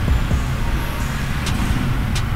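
Steady low background rumble with two faint clicks, one near the start and one about one and a half seconds in.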